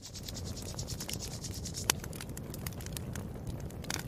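Crackling fire: a steady low rumble of flames with frequent sharp pops and snaps scattered through it.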